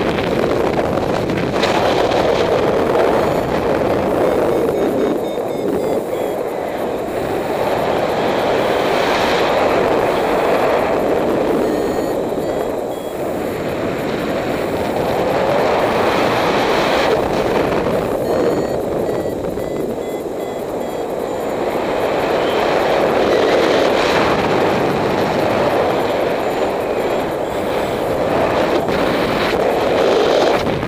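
Airflow buffeting the microphone of a camera rigged on a paraglider in flight: a loud, steady rushing that swells and eases every several seconds.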